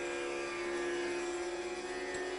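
Background music of the soundtrack holding one sustained, steady note with its overtones, a held drone between the plucked sitar phrases.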